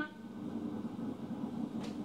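Faint, steady low background noise with no clear source, and one faint short click near the end.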